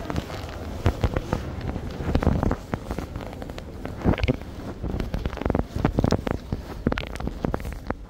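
Dense, irregular clicks and crackles of handling noise and rustling on a handheld phone's microphone as it is carried along, with a few brief snatches of voices.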